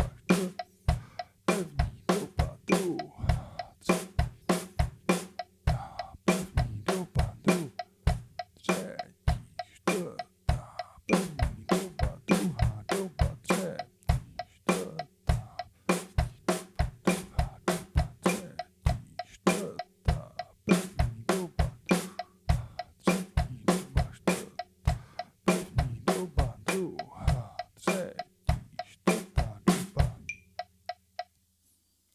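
Acoustic drum kit played as a slow, steady coordination exercise: single stick strokes on the drums alternating with bass drum kicks, about three hits a second. It stops abruptly at the very end.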